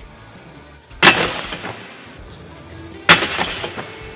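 Mountainboard hitting a metal-edged skate park ledge: two sharp, loud bangs about two seconds apart, the first about a second in, each trailing off in a short rattling scrape, as the trucks slam onto the ledge for a 50-50 grind and the board drops off it.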